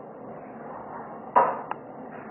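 A sharp knock with a brief ring, then a lighter click a moment later, over a faint steady hiss.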